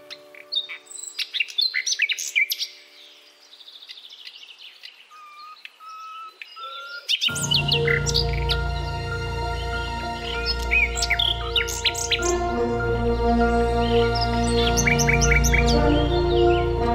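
Common nightingale singing a varied run of whistles and chirps, including a few long level whistles and quick repeated notes. About seven seconds in, background music with a low bass comes in under the song.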